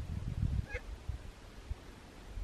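A duck gives one brief, faint call a little under a second in, over a low rumble in the first half-second.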